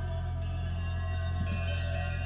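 Music of ringing bells over a steady low drone, with new bell strokes entering about half a second in and again about one and a half seconds in.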